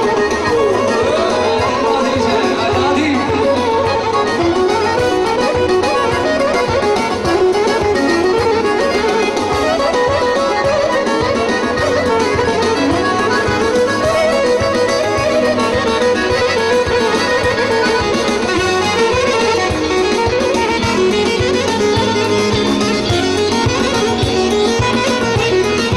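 Traditional Albanian dance music from a live wedding band, played loud through speakers: a winding melody over a steady beat.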